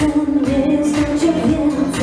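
Female singer singing a pop song live into a handheld microphone, with acoustic guitar and keyboard backing over a steady beat.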